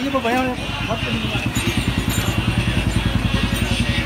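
Motorcycle engine running close by, a rapid, even pulse of about a dozen beats a second, coming in about a second in and holding steady.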